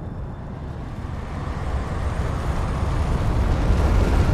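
Deep, toneless rumbling whoosh of documentary sound design, swelling steadily louder to a peak near the end.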